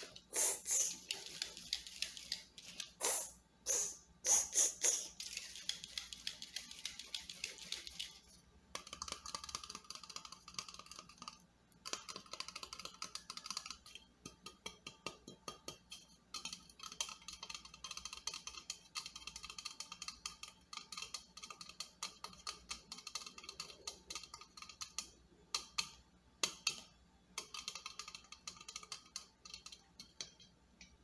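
Fingernails tapping and scratching rapidly on a metal aerosol spray can held close to the microphone, a fast run of light clicks with a faint ringing from the can. The first eight seconds carry a hissing rush with a few louder pulses.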